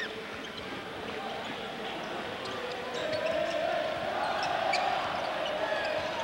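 Basketball arena during live play: the ball bouncing on the hardwood court over a steady crowd noise, which grows a little louder about three seconds in.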